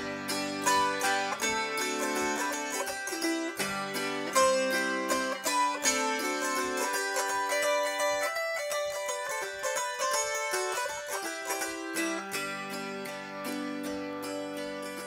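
Autoharp played solo: a steady run of plucked notes over ringing chords that change every few seconds, the low notes dropping away for a couple of seconds midway.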